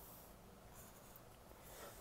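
Faint scratching of a marker pen drawing lines on paper.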